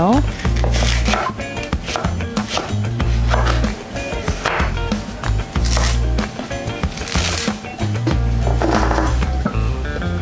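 Background music with a steady bass line, over a kitchen knife cutting zucchini and then crown daisy on a wooden cutting board, with repeated short knocks of the blade on the board.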